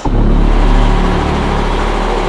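A loud, steady rumbling noise, machine-like, that starts abruptly at the beginning and holds unchanged.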